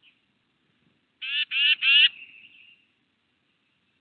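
A bird gives three loud, harsh calls in quick succession about a second in, followed by a short, fading softer note.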